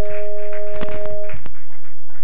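Church music between songs: a held two-note chord from a keyboard instrument that stops about one and a half seconds in, with several sharp percussive knocks scattered through it.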